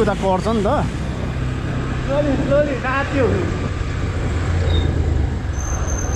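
A motorcycle engine running steadily at low speed under a haze of road and wind noise. A person's voice is heard briefly in the first second and again about two to three seconds in.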